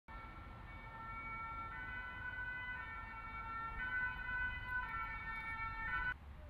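Sustained electronic tones sounding in chords, stepping to new notes about once a second over a low rumble, then cutting off suddenly at the end.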